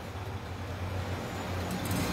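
Steady low background hum in a pause between words, like a running engine or traffic, with a few faint ticks near the end.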